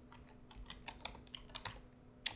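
Computer keyboard typing: a quick, faint run of single keystrokes as a word is typed out.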